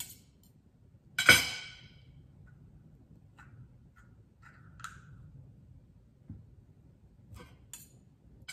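Metal fork and knife clinking on a ceramic plate and a small glass sambal jar: one sharp ringing clink about a second in, then a few faint light taps and clicks.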